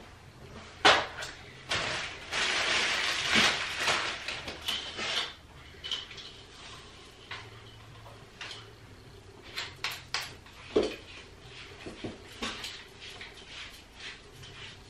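Handling of a ring light and its black metal tripod light stand: a sharp knock about a second in, a few seconds of rustling, then a series of clicks and clunks as the stand's legs are unfolded and its pole extended.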